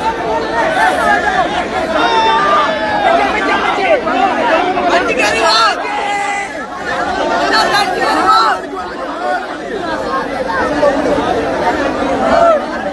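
A large crowd of men calling out and shouting at once, their voices overlapping into a loud, continuous din.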